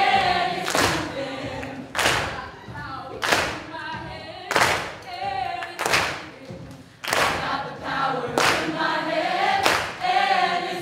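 A group of voices singing together in chorus, with everyone clapping in unison on a steady beat of about one clap every second and a quarter.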